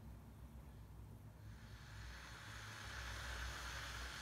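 Redmond glass electric kettle just switched on, starting to heat a water-and-vinegar descaling solution: a faint hiss that slowly grows louder from about a second and a half in, over a low steady hum.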